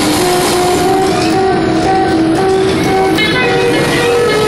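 Electronic music played live on a MIDI controller through a homemade wooden loudspeaker box: a synth melody of short stepping notes. About three seconds in, a new held tone with many overtones comes in.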